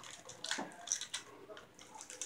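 Faint handling noises: a few soft, brief taps and rustles as plastic wrestling action figures are moved by hand on a toy ring, mostly in the first half.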